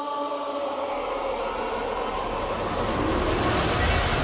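Music for a stage dance in transition: held choir-like chords fade out while a rising whoosh of noise and a low bass drone build steadily louder, swelling toward the next section of the music.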